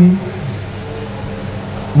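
A man's chanted Arabic phrase breaks off at the start and its echo dies away. Steady background noise follows, until a new chanted phrase starts right at the end.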